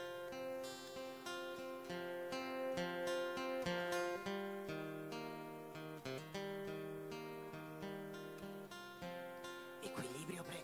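Steel-string acoustic guitar played solo, chords picked and strummed in a steady rhythm with the chord changing every second or so: the instrumental introduction of a song.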